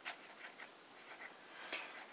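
Broad nib of a stainless steel Lamy 2000M fountain pen writing on notebook paper: a few faint, short scratching strokes as letters are formed.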